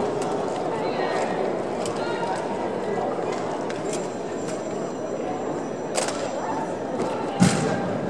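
Boots of a rifle drill squad stepping together on a hard arena floor, heard as a run of light clicks over a steady murmur of crowd voices in a large hall. There is a sharp knock about six seconds in and a heavier thump shortly before the end.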